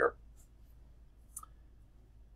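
Quiet room tone with one short, faint click about a second and a half in.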